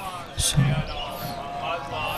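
A short thump or pop on the stage microphone about half a second in, followed by faint brief voice sounds over low background noise through the public-address sound.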